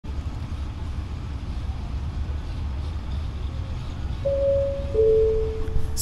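Steady low rumble of an airport moving walkway, with a two-note falling electronic chime about four seconds in, the lower note held until the end.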